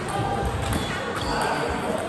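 Table tennis rally: the ball clicking off the bats and bouncing on the table, with background chatter in a large hall.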